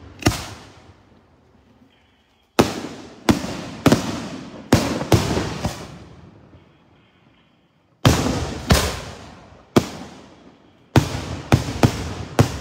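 Daytime fireworks going off: about a dozen loud, sharp bangs, each trailing off in a long rolling echo. They come in irregular volleys with two pauses, and the bangs come faster together near the end.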